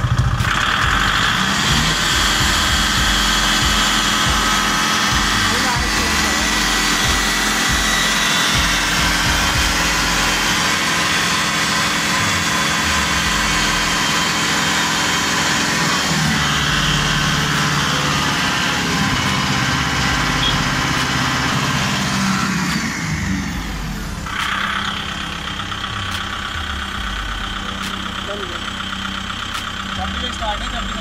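Kubota MU5501 tractor's four-cylinder diesel engine running as the tractor moves. About 23 seconds in, the sound drops in level and settles into a steadier, lower run.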